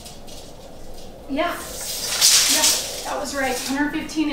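Steel tape measure blade retracting into its case: a loud, hissing rush lasting about a second and a half, starting about one and a half seconds in.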